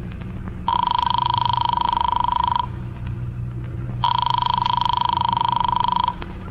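Telephone bell ringing twice, each ring about two seconds long with a rapid trill, over a steady low hum from the old recording.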